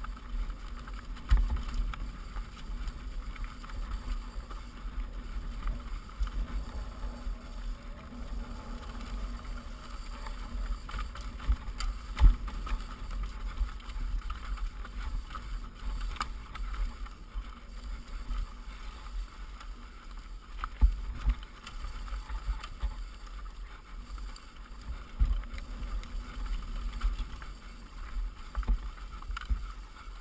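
Mountain bike descending a steep rocky trail: wind rumble on the camera microphone, with tyres crunching over loose rock and the bike and mount rattling and jolting. The sharpest knocks come about 1.5, 12, 21 and 25 seconds in, the loudest near 12 seconds.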